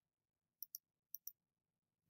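Faint computer mouse clicks over near silence: two pairs of quick high clicks, the first about half a second in and the second about a second in.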